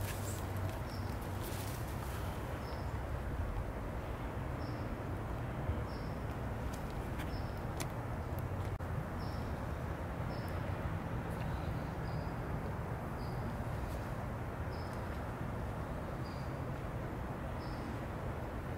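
A small animal's short, high chirp repeating about once a second over steady low outdoor background noise.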